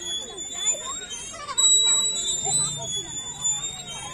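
Metal swing hangers squeaking as the swings move: a high, steady-pitched squeal that comes and goes in short stretches with the swinging, over children's and adults' chatter.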